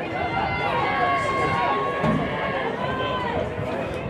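Several voices shouting and calling out at once from around a rugby sevens pitch, overlapping, with some calls drawn out for a second or more.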